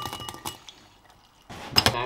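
Dry breakfast cereal pouring from a glass jar into a ceramic bowl, trailing off in a few small rattles, then a sharp glassy clink about one and a half seconds in.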